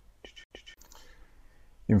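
A pause in a man's speech: a few faint clicks and breath sounds in the first second, then his voice starts again near the end.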